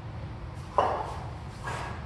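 A man's sharp breaths, twice, about a second apart.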